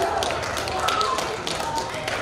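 Quick, irregular sharp taps, several a second, with faint voices calling.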